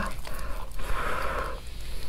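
Gloved hands tearing a whole roast chicken apart, the skin and meat ripping and the disposable plastic gloves crinkling, in one swell lasting about a second.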